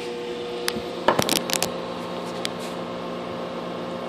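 Heathkit SB-220 linear amplifier powered up and idling, its cooling fan and power transformer giving a steady hum with several fixed tones. A few short clicks of handling come about a second in.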